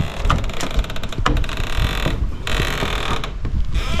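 A wooden screen door pushed open against its stretched coil spring, with a dense run of rattling clicks and rustling, then a step down onto concrete-block steps near the end.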